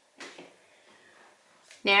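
Mostly quiet room tone with one brief soft scuff about a quarter of a second in; a woman's voice starts near the end.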